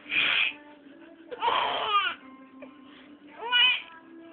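An infant laughing and squealing in three separate bursts, the last one high and shrill.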